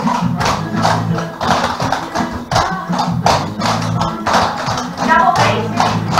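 A song with vocals playing, over the sharp rhythmic clicks of several dancers' metal clogging taps striking a wooden floor.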